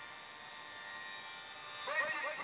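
A low steady electrical hum with hiss. Singing with music comes in just at the end.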